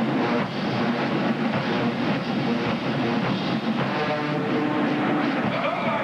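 Marching band playing: brass horns sound sustained chords over steady drumline percussion.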